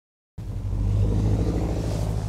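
A motor vehicle's engine running close by, a steady low rumble that starts about a third of a second in.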